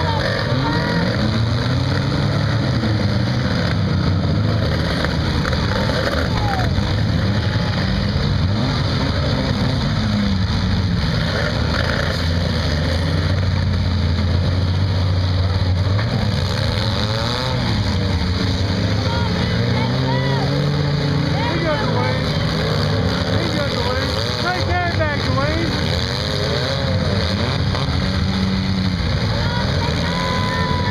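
Many compact-car engines revving and running in a demolition derby, their pitch rising and falling as the cars accelerate and ram one another, with voices mixed in.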